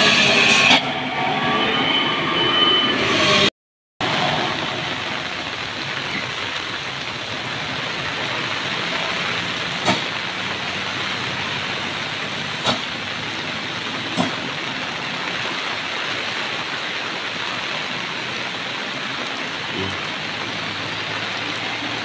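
A loaded truck passes close on a wet road in the opening seconds. After a brief dropout, steady rain hiss follows, with a few sharp ticks.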